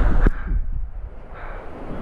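One sharp click about a quarter second in, followed by a low rumbling noise of pool water moving against a handheld waterproof action camera at the water surface.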